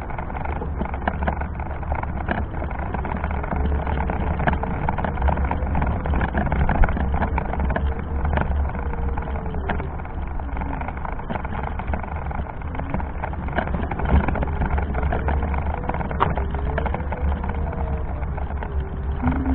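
Meyra Optimus 2 power wheelchair driving along a paved sidewalk: a steady low rumble with many small clicks and rattles as it rolls, and a faint motor whine that wavers up and down in pitch.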